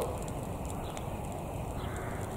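Burning straw bale stack crackling, with scattered sharp little pops over a low, steady rumble.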